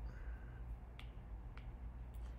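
Two light, sharp taps of a stylus tip on a tablet's glass screen, about a second in and again half a second later, over a faint low hum.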